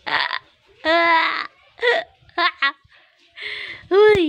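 Wordless high-pitched voice sounds: a string of short coos and calls, one held for about half a second near the start and a rising-then-falling call at the end, either the baby vocalising or an adult cooing at her to get a smile.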